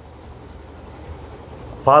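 Pause in a man's speech, filled only by a steady low background hum and hiss. His voice comes back in near the end.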